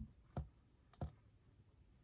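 A few soft clicks and taps from a hardcover picture book being handled and held up, about four in the first second or so.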